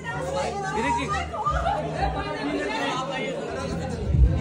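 Several people talking over one another: indistinct chatter with no single clear voice.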